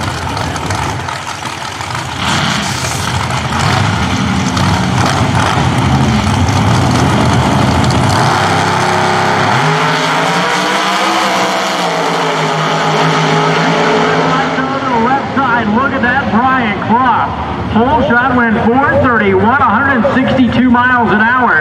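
Two Pro Outlaw 632 doorcars' big-block V8 engines running loud at the starting line, then launching and making their pass. Their sound drops away down the track about fourteen seconds in.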